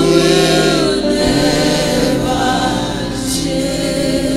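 Gospel-style worship singing: voices hold long sung notes, sliding gently between pitches.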